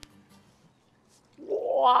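Near silence, then about a second and a half in a man lets out a long, drawn-out "waaa" of amazement, rising in pitch.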